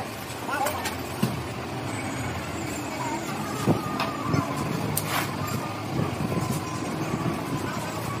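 Sharp metallic clinks and taps of small metal parts and tools being handled on an engine cylinder head, a few scattered strikes, over a steady hum of workshop and traffic noise.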